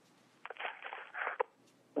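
Faint sounds through a telephone conference line, cut off above the phone band, between about half a second and a second and a half in, as the operator's line opens.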